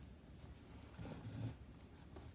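Faint rustling of hands handling a crocheted yarn piece while sewing it with a darning needle, with one soft, dull rubbing sound a little after a second in.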